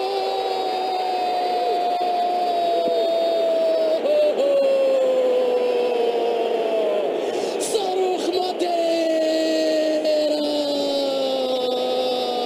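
A football commentator's drawn-out goal cry: one voice holding long notes of about four seconds each, three in a row, each sliding slowly down in pitch, over stadium crowd noise.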